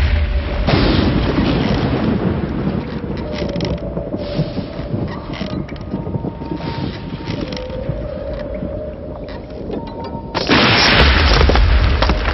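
Film soundtrack of deep, rumbling booms with a few faint, drawn-out tones over them; a loud rush of noise surges in suddenly near the end.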